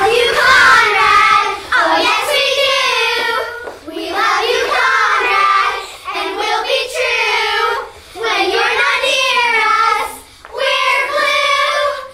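A chorus of children, mostly girls, singing together in about five short phrases, each separated by a brief break.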